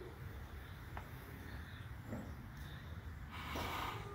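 Quiet stretch with a low steady rumble; near the end a horse gives a soft snort, blowing air out through its nostrils.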